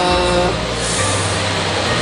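A steady rushing noise with a low hum beneath it, filling the pause in speech.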